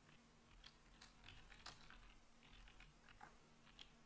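Very faint typing on a computer keyboard: an irregular run of light key clicks.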